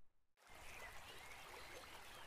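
A brief dead silence, then a faint, steady rush of flowing water.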